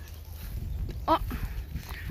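Footsteps through forest undergrowth, with low irregular rumble from the handheld phone as it is carried, and a short exclaimed "oh!" about a second in.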